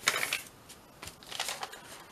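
Coffee-stained paper rustling and crinkling as it is folded and pressed flat by hand, in two short bursts: one at the start and one about halfway through.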